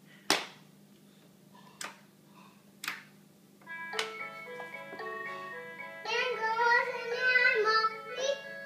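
Three sharp plastic knocks in the first three seconds, then a cat-shaped B. Meowsic toy keyboard plays a tune of steady electronic notes. About six seconds in, a small child starts singing along into the toy's microphone, louder than the keyboard.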